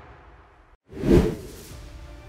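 The last of an intro music sting fading away, then, after a brief silence, a single whoosh transition effect about a second in that swells quickly and fades.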